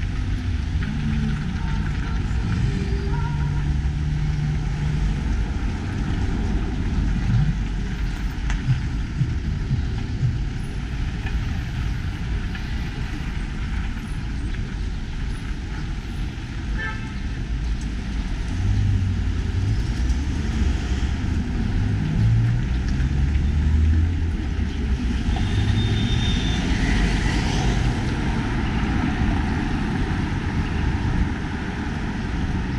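City street traffic: cars and a truck passing on the road alongside, engines running with a continuous low rumble that swells as vehicles go by. A brief high-pitched tone sounds near the end.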